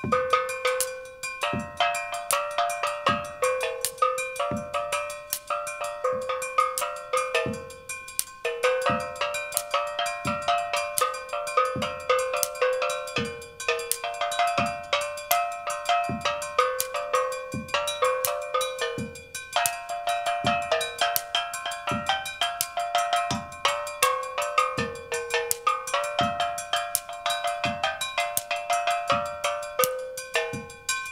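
Small souvenir-type steel pan, its dented metal tuned to a few notes, played with a stick in a tune of bright ringing notes. A drum kit accompanies it with a steady bass-drum beat.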